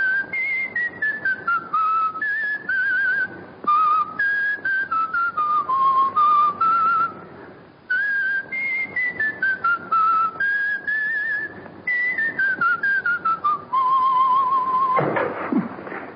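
A person whistling a melody in several falling phrases of short notes with a wavering vibrato, ending on a long held low note. It is the music-box tune just heard, whistled back from memory.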